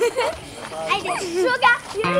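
A young child's high-pitched voice, talking in short phrases.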